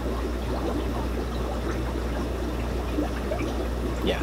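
Steady trickling and bubbling of water from aquarium filtration in a room full of fish tanks, over a constant low hum.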